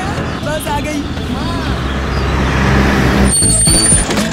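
Bus engine running as the bus approaches, growing gradually louder, then a high-pitched hiss of the air brakes near the end as it pulls up.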